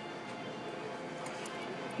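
Steady, low background noise of a restaurant dining room, with no distinct sounds standing out.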